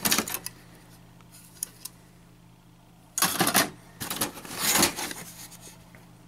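Computer expansion cards clattering and scraping against each other and the cardboard box as hands rummage through it and lift a card out. A short clatter at the start, a pause with a couple of faint ticks, then two longer bursts of rattling in the second half.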